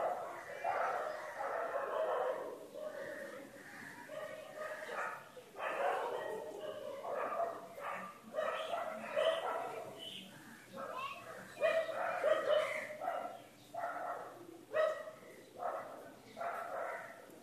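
Short, pitched calls and voices in the background, coming and going throughout. The brush dabbing on paper does not stand out.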